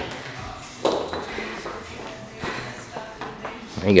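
Footsteps and a few light taps on a rubber-matted gym floor, with a faint voice in the background.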